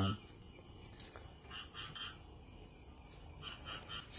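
Faint insects chirping in a few short groups of chirps over low background noise.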